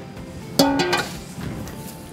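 Background music: a guitar chord strummed about half a second in, ringing briefly and fading.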